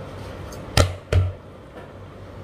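Two sharp knocks in quick succession, about a third of a second apart, a little under a second in, over a low steady background hum.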